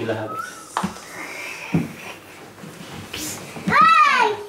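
Small children's voices with a loud high-pitched squeal near the end, and a couple of knocks about one and two seconds in as they clamber in an empty plastic folding bathtub.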